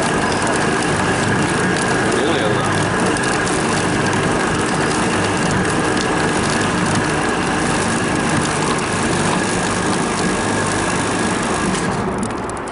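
CTM40C rebar threading machine running, its chaser die head cutting a parallel thread onto a steel rebar: a loud, steady mechanical grinding with a constant whine.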